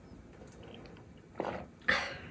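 After a quiet stretch, a person gasps for breath twice, loudly and briefly, about a second and a half in, on coming up from chugging a bottle of juice in one go.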